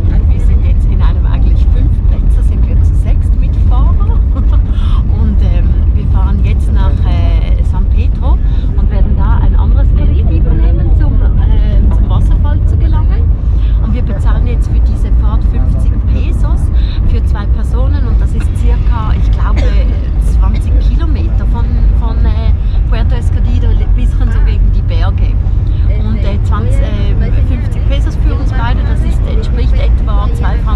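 Steady low rumble of a moving taxi, engine and road noise heard from inside the cabin, with people talking over it throughout.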